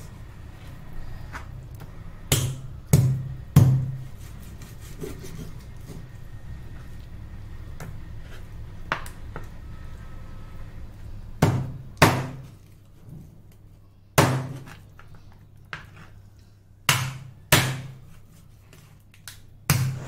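A heavy knife chopping duck into pieces on a cutting board. The strikes come singly and in twos and threes with pauses between them, about nine in all.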